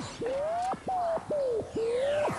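Warbling electronic sound effect marking the brain-reading gadget picking up a signal: a single clean tone slides up in pitch and drops back sharply, several times in a row.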